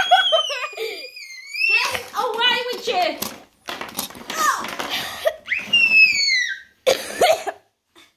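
A toddler's high-pitched squeals and laughter while playing, with an adult laughing along; two long falling squeals, one at the start and one about six seconds in, between breathy bursts.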